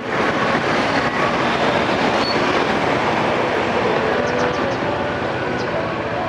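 Steady rushing road and wind noise while riding a motorbike through city traffic.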